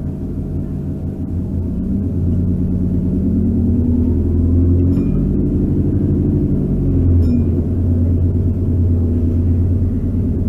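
A London bus's engine and drivetrain heard from inside the passenger saloon while the bus accelerates: the engine note climbs in pitch, drops about halfway through and again a couple of seconds later as the gearbox changes up, then runs on steady.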